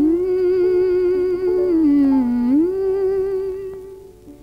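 A woman's voice humming a slow, long-held melody with vibrato from an old Hindi film song. The note dips lower about two seconds in, then rises back, over soft sustained accompaniment. It fades near the end.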